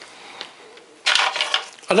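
A dry, square cracker crunching, one short crackly burst starting about a second in.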